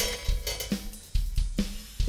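Top hi-hat cymbal being handled and lowered onto the rod of a clamp-on auxiliary hi-hat attachment. It gives quiet metallic handling noise and a faint cymbal ring, with one sharper knock about a second in.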